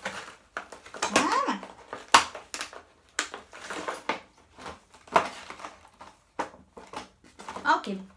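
Clear plastic packaging crinkling and rustling in irregular bursts as it is handled.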